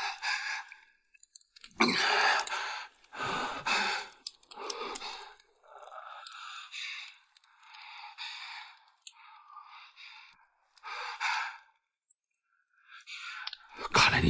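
A man's heavy, ragged breathing: about eight loud breaths and gasps, each roughly a second apart, the strongest near the start.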